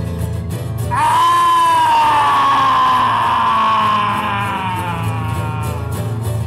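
Two acoustic guitars playing. About a second in, one long high wailing note joins them: it swoops up, then slowly sinks and fades over about four seconds.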